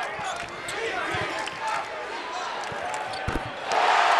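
A basketball dribbled on a hardwood court: a few separate bounces, the loudest a little after three seconds in, over the low background noise of an arena.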